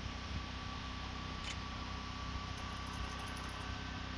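A machine running with a steady low hum and a faint thin whine above it, and one soft click about a second and a half in.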